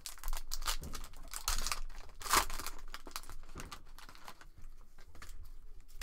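Foil wrapper of a 2017 Panini Prizm football card pack crinkling and tearing as it is ripped open. The crackle is densest in the first two and a half seconds, then turns quieter and sparser.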